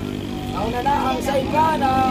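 Steady engine drone of racing jet skis (personal watercraft) running at speed, with people's voices talking over it from about half a second in.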